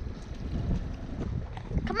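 Wind buffeting the camera microphone on an open boat: a low, gusty rumble.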